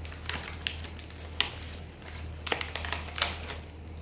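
Packaging crinkling and crackling in irregular bursts as a Megaminx speed cube is unwrapped by hand, with a quick run of sharper crackles about two and a half seconds in.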